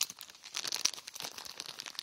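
Plastic bag or packaging being handled, crinkling and rustling in quick, irregular crackles.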